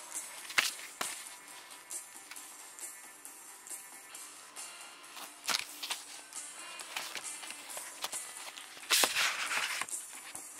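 Paper rustling and sliding as an envelope and booklets are handled, with sharp rustles about half a second in and a louder burst of rustling near the end, over faint background music.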